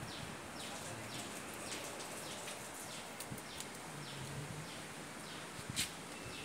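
A bird calling over and over, a short falling chirp about twice a second, over a steady outdoor hiss. A sharp click sounds near the end.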